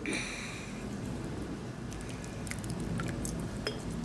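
Metal ladle scooping thick hot chocolate out of a slow cooker's crock and pouring it into a glass jar: soft sloshing and dribbling liquid, with a brief ringing clink at the start and a few light clicks later.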